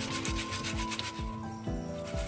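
Wet green coffee beans rubbed and stirred by hand in a metal mesh strainer, a gritty rustle of many short strokes, being washed the way rice is rinsed. Soft background music with held notes plays underneath.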